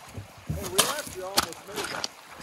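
Two sharp knocks on an aluminium boat hull as someone climbs aboard, about a second apart, with voices talking in the background.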